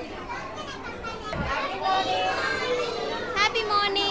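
Young children's voices chattering and calling out over one another, high voices overlapping throughout.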